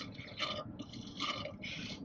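A drink being sucked through a straw from a plastic cup: several short slurps in a row.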